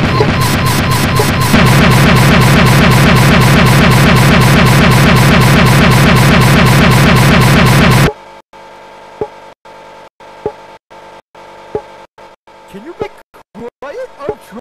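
Loud, harsh stuttering loop of distorted computer audio repeating several times a second, the stuck-buffer sound of a crashing Windows virtual machine; it cuts off abruptly about eight seconds in, leaving faint clicks.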